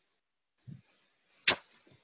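A soft low thump, then about a second later a sharp knock followed by two faint clicks, with dead silence between them.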